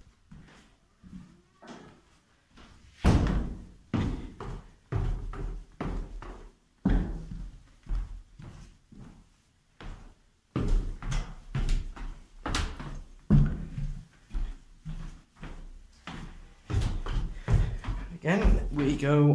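Footsteps going down a staircase: a run of separate heavy thuds, roughly one or two a second, starting about three seconds in and growing louder and closer together in the second half.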